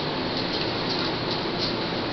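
A steady, even hiss with no distinct sounds in it.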